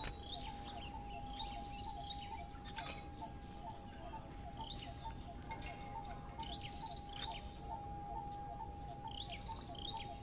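Small birds chirping now and then, short rising and falling calls, over a steady high tone that pulses about three times a second, with a low background rumble.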